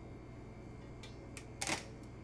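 A metal ladle working in a stainless steel bowl of tofu curds and whey: two faint clicks about a second in, then a short scrape near the end.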